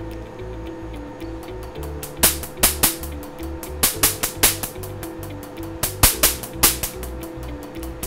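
Sharp snaps of a Q-switched Nd:YAG laser firing on the skin, about a dozen irregular pops from about two seconds in, a few a second. Each snap is the laser pulse hitting the melanin in a pigmented spot.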